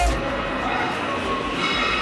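Music cuts off right at the start, leaving a steady, even background rumble with a faint hum: the room noise of a large gym.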